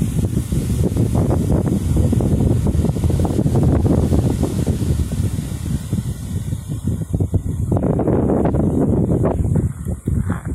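Wind buffeting the microphone: a loud, uneven low rumble that rises and falls throughout.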